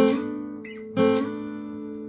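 Acoustic guitar: a two-note figure on the second and third strings near the first frets, struck twice about a second apart, each time left to ring out.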